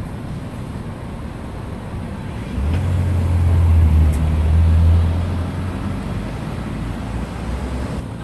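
Road traffic running steadily, with a passing vehicle's low engine drone swelling about two and a half seconds in and fading after about five and a half seconds.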